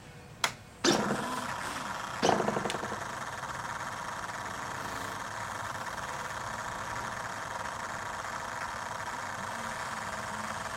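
A sharp click, then a small model engine catches just under a second in and surges again a little over two seconds in. It then settles into a steady idle.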